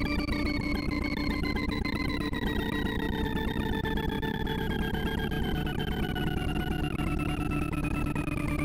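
Sonification from a sorting-algorithm visualizer: a dense, buzzing stream of synthesized tones, one per array access, as Quick Sort with left/left pointers works through a 2,048-number sawtooth array. One tone with its overtones slowly falls in pitch across the whole stretch.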